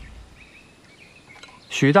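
Quiet outdoor ambience with a few faint bird chirps, then a man starts speaking near the end.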